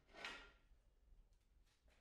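Near silence, with one faint, brief scrape early on as steel tubing is slid into place against the cold saw's fence.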